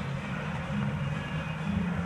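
Steady low hum and rumble of background noise in a large gym hall, with low droning tones that shift in pitch every half second or so.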